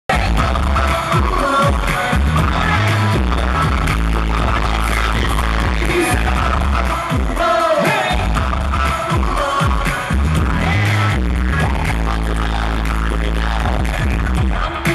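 Live pop music played loud over a concert sound system, heavy on bass, with singing, recorded from within the audience.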